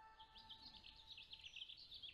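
Faint birds chirping: many short, high calls in quick succession.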